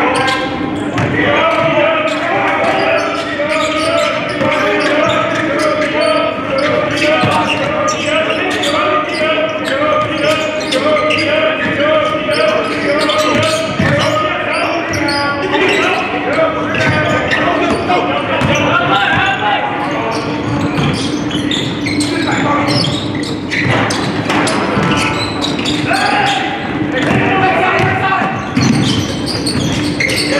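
Live basketball game: the ball bouncing and dribbled on a hardwood court, many short knocks, over voices of players and spectators that carry no clear words.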